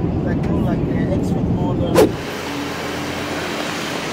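Steady low rumble of airliner cabin noise, cut off by a sharp click about two seconds in. It gives way to a quieter, steady traffic hum with one held tone, as from a vehicle idling.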